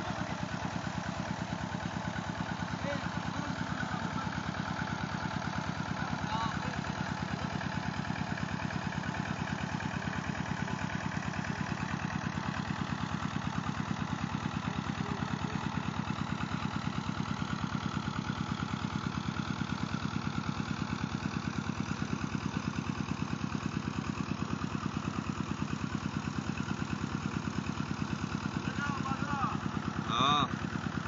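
Stationary flywheel engine running steadily with an even, rapid beat, driving the pump that lifts water from a tubewell.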